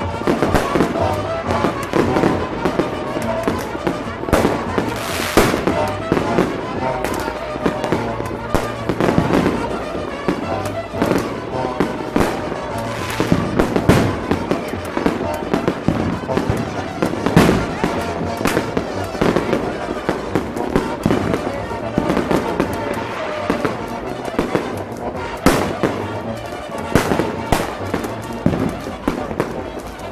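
Aerial fireworks going off in a continuous barrage of sharp bangs and crackles, with a few louder reports about five seconds in, about halfway through and near the end.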